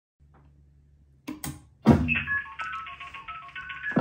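A few clicks and a knock, then a quick run of telephone dialing tones from a telephone-relay demo board's speaker. Each steady beep lasts a fraction of a second before the next pitch takes over.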